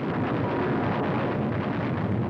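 Steady, dense roar of battle sound effects on an old newsreel film soundtrack, with no distinct single shots standing out.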